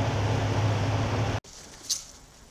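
Steady low machine hum, as from a fan or ventilation unit running, which cuts off suddenly about one and a half seconds in. It is followed by quiet room tone with one short, sharp click just before the end.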